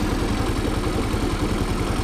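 Kymco Super 8 scooter engine idling steadily with an even, regular beat, its carburetor jets freshly cleaned and the idle now holding where it used to die.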